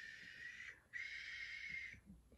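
A woman making a wind sound with her mouth: two long, soft, breathy blows with a faint whistle in them, the first stopping just before a second in, the second following right after.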